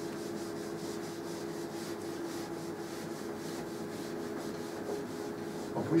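A blackboard being wiped clean with an eraser: quick, repeated rubbing strokes across the chalk-covered board, over a steady low room hum.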